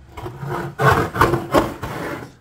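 Rubbing and scuffing handling noise from a phone camera brushing against clothing as it is moved, with several louder scrapes about a second in.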